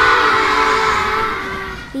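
A group of children screaming all together, acting out a flock of sheep fleeing in terror; the screams are loud at first and fade away over about two seconds.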